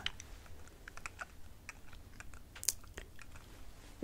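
Faint, irregular small clicks and ticks picked up close to a sensitive microphone, one slightly louder near the three-quarter mark, over a low steady hum.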